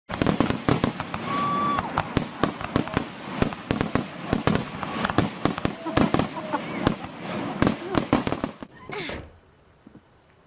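A rapid, irregular run of sharp bangs and pops, several a second, with voices mixed in. A rising whoosh about nine seconds in ends it.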